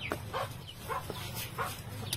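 A few short, faint animal calls, spaced through the two seconds.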